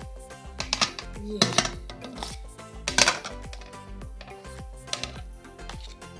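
Background music with a steady beat. Over it, a metal spoon clinks and scrapes several times against a steel bowl as sticky potato dough is scooped out.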